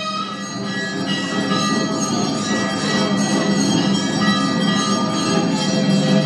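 Bells ringing continuously over a steady low drone, with music, at a temple lamp puja.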